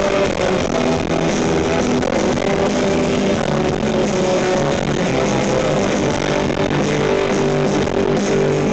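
Live rock band playing loudly, electric guitar to the fore over bass and keyboards.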